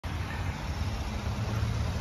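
2018 Kia Sorento's V6 engine idling: a steady low rumble under an even outdoor hiss.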